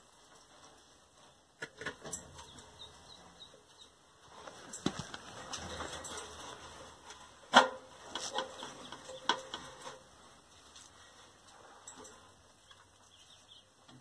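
A person climbing down a metal ladder through a tight concrete opening: clothing and gear rustle, with scattered knocks and taps from boots and gloves on the rungs and concrete, the sharpest about halfway through.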